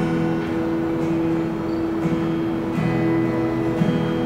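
Solo acoustic guitar playing the instrumental intro of a song: sustained ringing chords, with a chord change about three seconds in.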